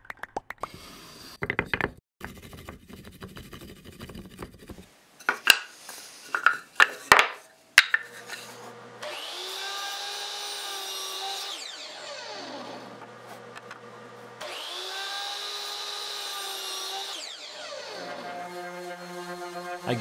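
A run of knocks and clicks, then a miter saw making two cuts in pine: each time the motor whines up to speed, cuts, and winds down with a falling pitch.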